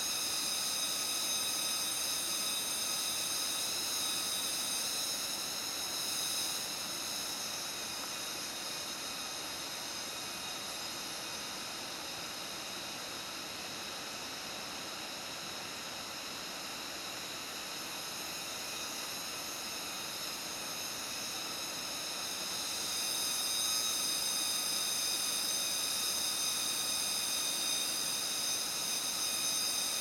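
Steady forest ambience: an even, high-pitched drone of several pitches. It swells briefly about six seconds in and grows louder again from about two-thirds of the way through.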